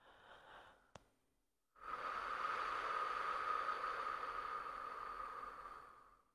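A woman breathing slowly: a faint breath at first, a small sharp click about a second in, then one long, slow breath lasting about four seconds.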